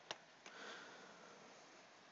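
Near silence with a sharp click just after the start and a softer click about half a second later, then a faint sniff.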